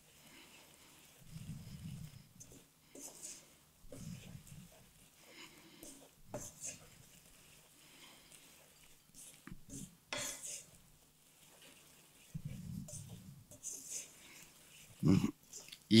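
A wooden spatula stirring almonds in thickening, caramelising sugar in a pan, making soft intermittent scraping and rustling. A few short, low sounds from the cook's voice, without words, come in between.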